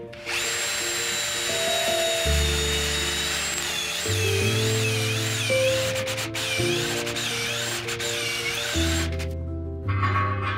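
Cordless drill boring a quarter-inch pilot hole into an ash log: a high motor whine, steady at first, then wavering up and down in pitch from about a third of the way in, stopping shortly before the end. Background music plays underneath.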